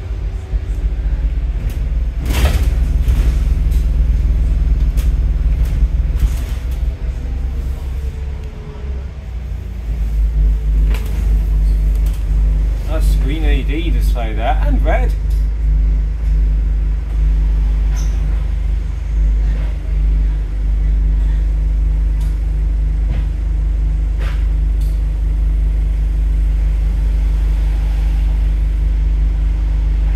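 Scania N230UD double-decker bus's diesel engine and drivetrain running under way, heard from inside the upper deck as a steady low rumble. It eases off about eight seconds in and builds again from about ten seconds.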